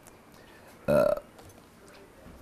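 A man's single short vocal sound, a brief 'eh'-like noise or throaty grunt, about a second in, with quiet around it.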